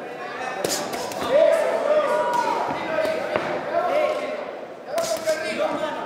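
Kickboxing bout heard in a large, echoing hall: a handful of sharp thuds from strikes landing and feet on the ring canvas, over voices calling out around the ring.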